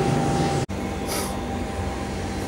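Steady low mechanical hum with a thin steady tone, cut off sharply less than a second in, then steady machinery noise again with a short high hiss about a second in.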